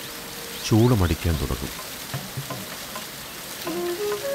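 Steady rushing hiss of water falling at Athirappilly Falls. A man's voice cuts in briefly about a second in, and a flute melody begins near the end.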